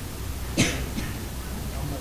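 A person coughing, one short, sharp cough about half a second in with a smaller one after it, over a steady low room hum.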